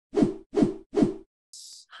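Logo sting sound effects: three quick hits about 0.4 s apart, each with a low tone dropping in pitch, followed near the end by a short high whoosh.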